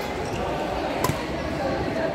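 A single sharp crack of a badminton racket hitting a shuttlecock about halfway through, over steady voices in a large echoing hall.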